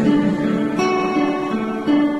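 Acoustic guitar accompaniment between vocal lines: strummed chords left to ring, with a new chord struck about a second in.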